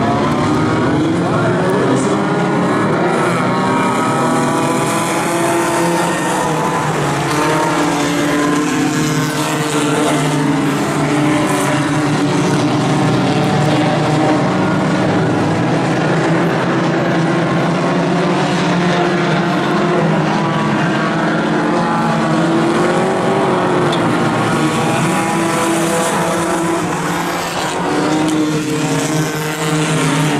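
A pack of Outlaw Tuner compact race cars running at speed on a dirt oval, several engines at once rising and falling in pitch as the drivers lift and accelerate through the turns.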